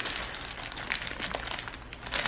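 A small plastic parts bag holding guitar control knobs crinkling as it is handled, with light, irregular ticks.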